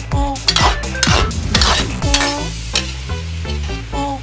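Metal spatula stirring and scraping diced pork lung and heart around a metal wok in repeated strokes, with the food sizzling as it cooks. Background music with steady notes plays throughout.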